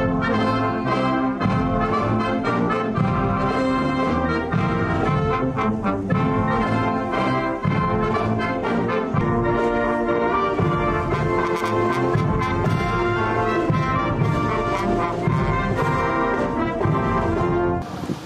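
Military brass band playing outdoors, with trumpets over trombones and tubas, loud and steady; it cuts in suddenly at the start and stops just before the end.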